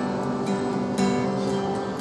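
Acoustic guitar strummed between sung lines, chords ringing on with fresh strokes about every half second.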